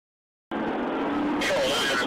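Silence, then about half a second in the audio of a police car's dashcam cuts in abruptly: steady in-car road and engine noise, with a man's voice over it from about a second and a half in.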